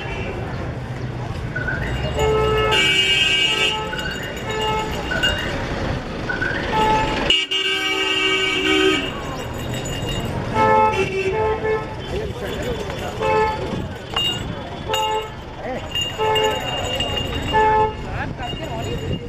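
Busy street traffic with vehicle horns honking several times, the longest honks about 3 seconds in and for over a second about halfway through, over a constant hum of street noise and passers-by's voices.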